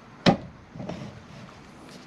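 A single sharp metal knock about a quarter second in, then faint handling noise: the umbrella's metal pole tapping against the metal base tube as it is lined up.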